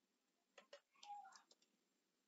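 Near silence with a few faint, sparse clicks of computer keys and mouse as text in the editor is being changed.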